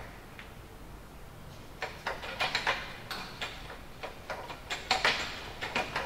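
Short clicks and knocks from a Smith machine's pull-up bar and frame under a man doing pull-ups. They start about two seconds in and come in uneven clusters.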